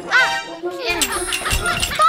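A cartoon character's short wordless vocal exclamation, its pitch rising then falling, followed by a run of clicks and knocks from cartoon sound effects over background music.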